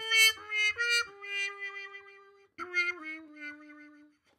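Trumpet with a Jo-Ral aluminum/copper harmon (bubble) mute, its stem pulled halfway out, playing a short phrase: a few quick notes, then longer held notes stepping down in pitch, the last one fading out at the end. The half-out stem gives a mellower tone, shaded by the hand working over the stem for a little wah-wah.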